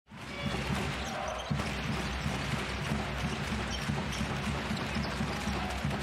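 Basketball game sound in an arena: a steady bed of crowd noise with a ball being dribbled on the hardwood court.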